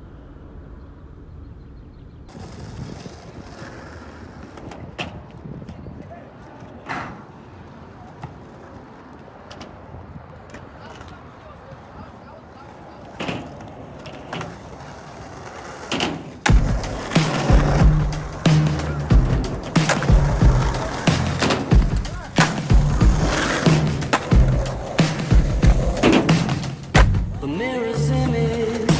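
Skateboard wheels rolling on asphalt, with scattered clacks and knocks of the board and a slide on a metal rail. About sixteen seconds in, loud music with a heavy bass beat comes in and covers the skating.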